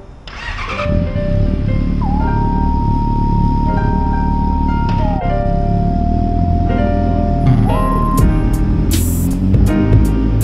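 Outro music over a sport motorcycle's engine running, the bike pulling away in the second half.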